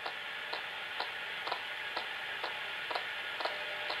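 Ghost box (a radio scanning through stations) playing steady static through speakers, with a short click about twice a second as it steps to the next station.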